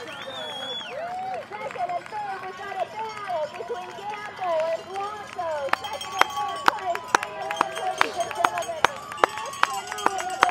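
Spectators' voices overlapping in steady chatter and calls, with scattered sharp taps through it.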